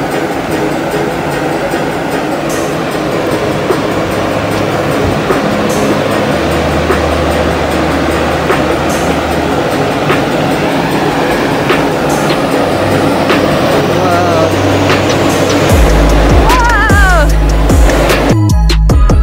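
Background music with a deep, steady bass line that steps between notes every few seconds and gets much heavier near the end, with a few wavering gliding tones over it.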